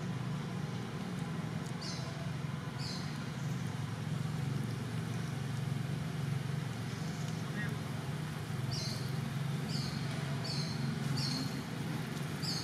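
A steady low mechanical hum runs throughout. Short high chirps come twice early on and then repeat about twice a second over the last few seconds.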